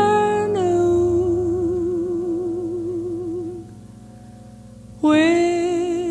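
Female jazz vocalist singing a slow ballad, holding one long note with a slow, even vibrato over piano and double bass. The note fades out about three and a half seconds in, and after a short quieter stretch she comes in on a new held note about five seconds in.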